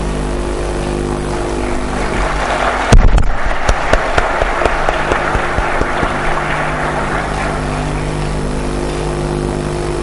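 Steady electrical hum from the hall's sound system throughout. About three seconds in, a loud knock, then a round of clapping that swells and fades away over the next few seconds.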